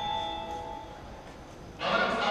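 Electronic chime notes from a railway station platform's PA speakers ringing on and fading, several sustained tones sounding together. Close to the end, a voice announcement starts over the speakers.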